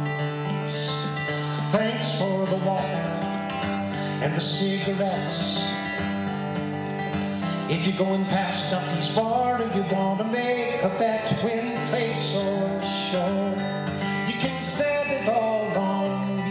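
Acoustic guitar played live in a folk song, chords ringing under a wandering melody line that comes in about two seconds in.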